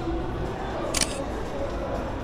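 A single camera shutter click about a second in, short and crisp, over the steady background noise of a busy indoor mall.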